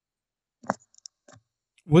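A few small mouth clicks: one sharper click a little after the start, then fainter ticks. A man starts speaking near the end.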